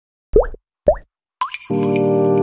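Opening jingle of a video intro: two short upward-sliding plop sounds about half a second apart, then a third, higher one. Near the end a sustained musical chord comes in and holds.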